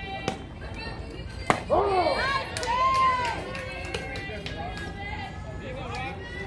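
Softball bat striking a pitched ball: one sharp crack about a second and a half in. Spectators yell and cheer right after the hit.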